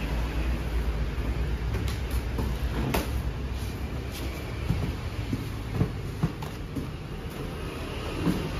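Boxed fireworks being handled and put into a cardboard carton: a scatter of light knocks and thuds from cardboard packs against the box, the sharpest about three seconds in and around six seconds, over a steady low rumble.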